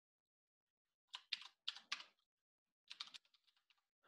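Faint keystrokes on a computer keyboard: a short run of key taps about a second in, and another shorter run near three seconds.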